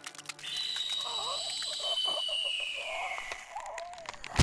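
Film soundtrack sound design: a quick run of clicks, then a thin high tone that slowly falls in pitch over eerie, warbling lower sounds.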